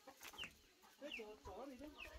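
Chickens clucking faintly, with a few short, high, falling calls.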